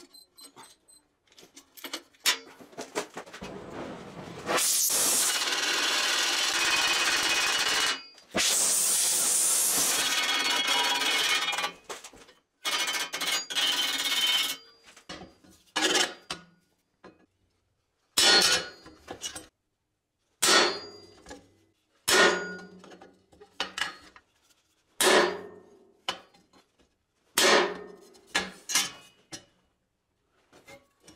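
A loud, steady rushing noise runs for several seconds in two stretches, then a hammer strikes a steel punch held against a steel plate about seven times, roughly every two seconds, each blow ringing briefly as it stamps marks into the metal.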